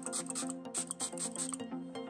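Perfume atomizer spraying onto a forearm: several quick hissing spritzes in the first half-second or so, over soft background music.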